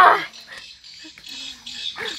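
A short, shrill, high-pitched shout right at the start, then soft splashing and sloshing of shallow muddy water as hands grope through it for fish.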